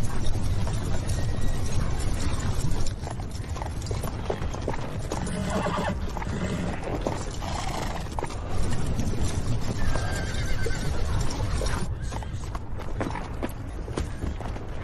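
Horses' hooves clattering and horses neighing, loudest in the first few seconds, with music underneath.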